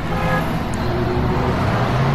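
Busy road traffic: vehicle engines running steadily under continuous road noise, with a horn note fading out at the very start.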